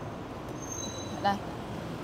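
A car door's latch clicking once as the door is opened, over a steady background hum.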